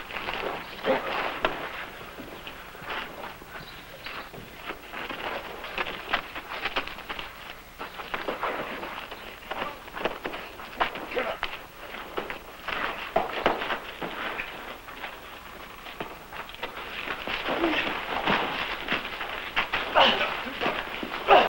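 Fistfight in a dirt street: repeated punch impacts and scuffling feet, with men's grunts and shouts.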